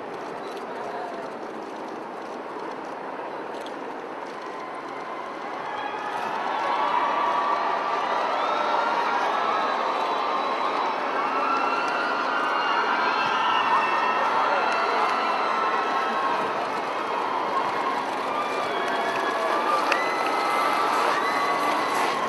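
A large crowd cheering, swelling about six seconds in and staying loud, with many high shouts and whoops.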